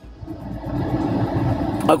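A road vehicle passing close by: a rushing noise that swells in over the first half second and holds steady until speech resumes near the end.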